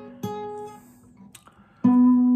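Acoustic guitar: one note plucked about a quarter second in, ringing and fading, then after a quiet gap a louder, lower note plucked near the end that keeps ringing. These are single plucked notes from the fretted blues-turnaround shape.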